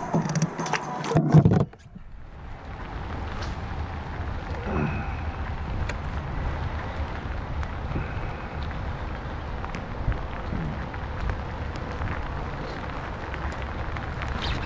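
Steady rain falling on the lake and kayak, with low wind rumble on the camera microphone and scattered faint ticks of drops. In the first two seconds, short clattering handling sounds come before it cuts off suddenly.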